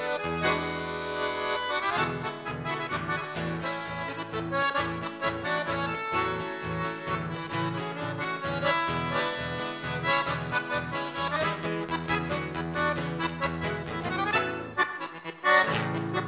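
Live chamamé played on a Crucianelli accordion, with an acoustic guitar accompanying: the accordion carries a dense chordal melody over a steady, pulsing bass line, with a brief drop and a sharp accent near the end.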